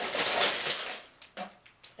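Clear plastic bag of Lego pieces crinkling and rattling as it is pulled out of the cardboard box, loudest in the first second, then a brief rustle about a second and a half in.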